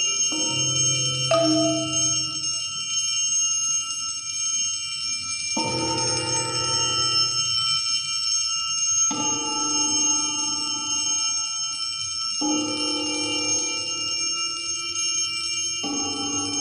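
Tuned metal discs struck with mallets, each stroke sounding a cluster of several bell-like tones that ring and slowly fade. Six widely spaced strokes, two close together near the start, then one about every three to four seconds, with a steady high ringing sustained underneath.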